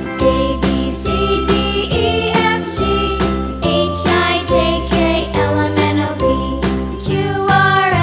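Background music for children with a steady beat and a bass line that steps between notes.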